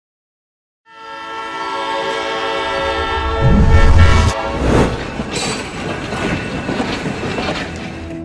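Train sound effect: a long, chord-like train whistle blast starting about a second in, followed by a heavy rumble and rush of a train going past, loudest around the middle.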